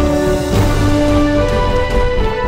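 Intro theme music: held chords over a pulsing bass, with a new chord struck about half a second in.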